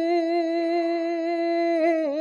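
A young man singing a Bengali song unaccompanied, holding one long note that wavers with vibrato at first and then steadies. The pitch dips slightly near the end.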